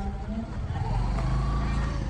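A motor vehicle passing on the road, its low engine rumble swelling about half a second in and easing near the end, with voices in the background.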